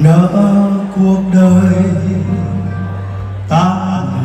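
A man singing a slow Vietnamese ballad into a handheld microphone over live instrumental accompaniment. His long held notes start at once, break off about a second and a half in, and a new phrase begins near the end.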